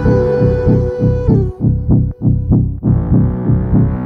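Dark electronic dance music with a fast, throbbing synth bass line. A little over a second in, the higher layers cut out and leave a few bare bass hits, then the full mix comes back in shortly before the three-second mark.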